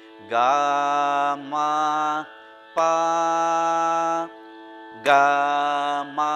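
A man singing a Carnatic varisai exercise in raga Mayamalavagowla over a steady drone. He holds four notes of about a second each, with short breaks and a slide into the first note.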